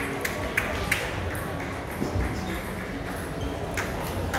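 Table tennis ball clicking off bats and the table: several quick knocks in the first second, a lull, then more knocks near the end, over the murmur of a busy hall.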